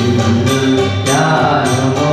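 A man singing into a handheld microphone through a PA, holding long notes, with a percussion beat roughly every half second behind him.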